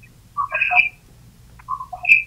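A caller's voice coming over a telephone line through the room's speaker, heard only in two short broken snatches with a thin, narrow telephone sound, as if the line is cutting in and out.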